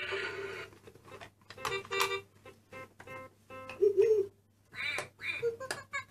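VTech Tiny Tot Driver toy steering wheel's built-in speaker playing short electronic tunes and sound effects in a string of brief bursts as its buttons are pressed.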